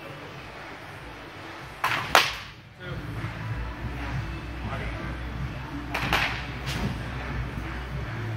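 Wooden baseball bat hitting pitched balls: two sharp cracks, about two seconds in and about six seconds in.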